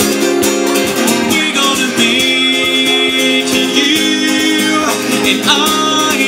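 Acoustic guitar strummed steadily between sung lines of a song, with the voice coming back in about five seconds in.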